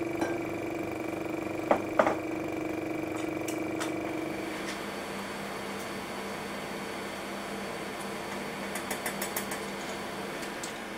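Steady hum of laboratory equipment, changing to a lower hum about halfway through. Two light clicks of handled glassware or instruments come about two seconds in, and a few faint ticks near the end.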